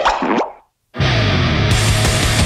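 A short cartoon-style pop sound effect with a quick pitch glide, ending about half a second in. After a brief silence, loud rock music starts about a second in.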